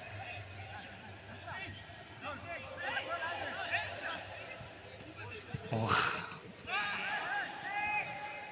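Footballers calling and shouting to each other across a training pitch, several voices at a distance, with a short loud burst of noise about six seconds in.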